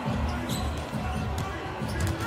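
Basketball being dribbled on a hardwood court, a run of repeated bounces several times a second.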